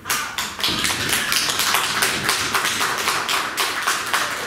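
Applause: a group of people clapping their hands, starting suddenly and loud, with separate claps standing out in a dense patter.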